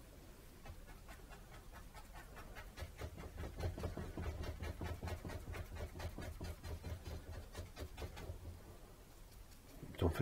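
Bristle brush dabbing and scrubbing acrylic paint onto a stretched canvas: a faint, quick run of short scratchy strokes, busiest in the middle, over a low steady room hum.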